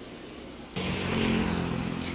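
A vehicle engine runs steadily close by on the road, coming in abruptly about a second in over low street background.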